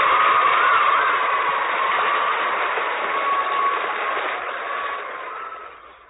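Studio audience applauding, dying away near the end. The sound is thin and muffled, heard through the narrow bandwidth of an old radio recording.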